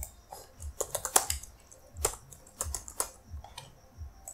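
Typing on a computer keyboard: keys struck in short irregular runs with brief pauses between them.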